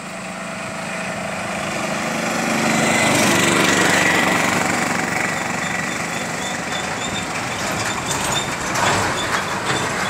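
Road traffic passing by: vehicle engines and tyre noise swell to a peak about three to four seconds in as a vehicle goes past, ease off, then surge briefly a few times near the end.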